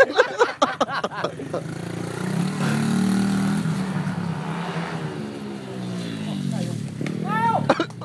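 BBR 110cc single-cylinder pit bike engine revving under way, its pitch climbing about two seconds in and then falling away over the next few seconds. Short shouts come at the start and a high-pitched shout near the end.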